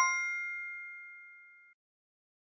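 A bright two-note chime sound effect. The second note rings out clearly and fades away over about a second and a half. It is the quiz's 'correct answer' cue as the right option is highlighted.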